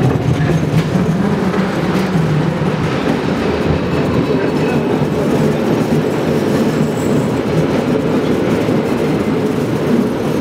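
San Francisco cable car running along its rails, a steady loud rumble of wheels and car body.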